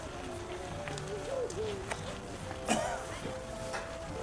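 Carousel music playing in the background, with a single short clink a little past the middle.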